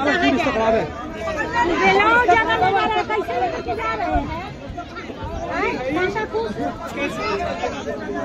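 Crowd chatter: many voices talking over one another, with no single speaker standing out.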